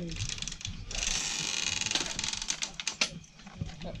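Handling noises: a rapid, rasping rattle lasting about a second, followed by scattered clicks and knocks.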